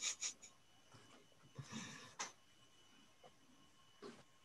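Faint handling noises as a restored Philco Predicta television is plugged in and switched on: a few soft clicks and rustles at the start, then a brief scrape ending in a sharp click about two seconds in.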